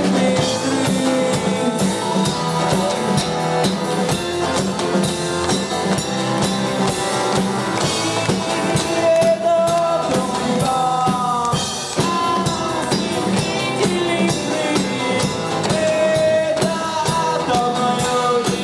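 Live pop-rock band playing through a PA: a steady drum-kit beat with guitars, and the lead singer singing into a handheld microphone.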